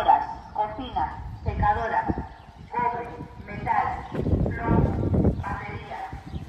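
A person laughing in repeated short bursts, with a low rumble joining in about four seconds in.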